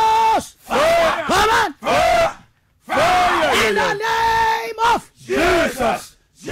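A woman shouting fervent prayer in a series of short, loud, high-pitched cries, each rising and falling in pitch, with two brief pauses.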